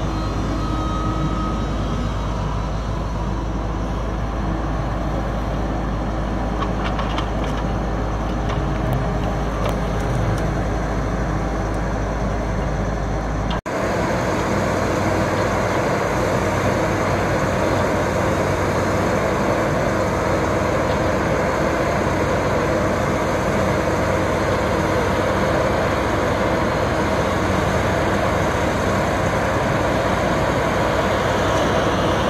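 Diesel engine of a John Deere tracked knuckleboom log loader running steadily under load as it handles and loads logs onto a log truck, with a few sharp knocks in the first half. The sound changes abruptly about halfway through and carries on steadily.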